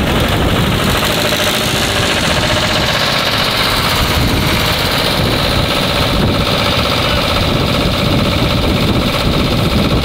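A fire engine's engine running steadily close by, driving the pump that feeds the hose lines.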